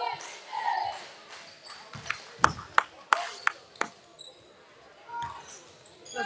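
A basketball bouncing on a hardwood gym floor: a quick run of about six sharp bounces, roughly three a second, starting about two seconds in, each ringing briefly in the hall. There are voices at the start.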